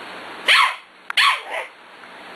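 Pembroke Welsh Corgi giving two short, sharp barks during rough play with puppies, about two-thirds of a second apart, each dropping in pitch.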